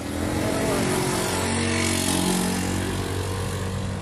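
Honda Beat 110 scooter's small fuel-injected single-cylinder engine running as the scooter rides along the road, a steady engine hum with a hiss of road noise.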